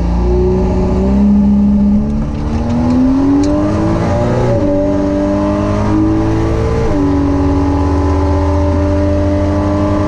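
Turbocharged Vortec 4200 inline-six at full throttle on a drag strip pass, heard from inside the car. The revs climb, then the pitch drops twice at gear changes, about four and a half and seven seconds in, and holds fairly steady after.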